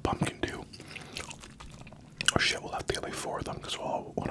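Close-miked chewing of a mouthful of bacon cheeseburger: wet mouth sounds with many small clicks, louder for a moment a little past halfway.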